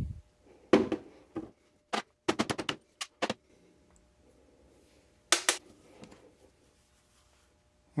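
Sharp metal-on-metal taps and clinks, including a quick rattling run of about five, as the steel roll pin is driven out of a Dana 44 differential carrier and comes free. One last pair of clinks comes about five seconds in.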